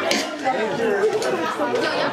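Several voices talking over one another, a jumble of overlapping chatter with no music.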